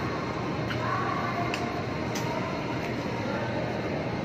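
Steady rumbling background noise in a covered parking area, with faint voices from people queuing and a few light clicks.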